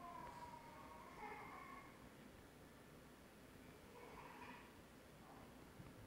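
Near silence, broken by a faint, high voice twice: once in the first two seconds and again about four seconds in. It comes from a recorded video of a mother and toddler played back in a lecture hall.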